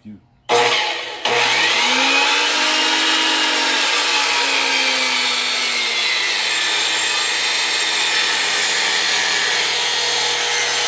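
Makita miter saw started about half a second in, then running loud and steady as its blade cuts through a log.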